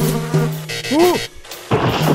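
Cartoon sound effect of a housefly buzzing in a steady low drone. A short rising-then-falling swoop comes about a second in, and a rush of noise near the end.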